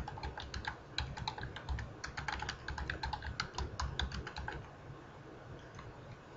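Typing on a computer keyboard: a quick, uneven run of keystrokes that stops about four and a half seconds in.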